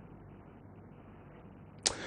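Quiet studio room tone in a pause between speakers. Near the end a sudden short hiss starts.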